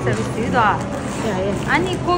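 Voices talking in a busy food court, one voice rising sharply in pitch about half a second in.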